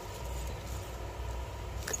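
Steady low background hum, room tone with no distinct event, and a faint tick near the end.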